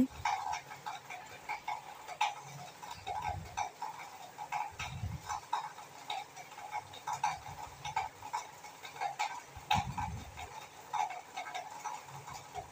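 Cumin seeds and ginger-garlic paste frying in hot oil in an aluminium kadhai: irregular crackling and popping, with a few soft low bumps.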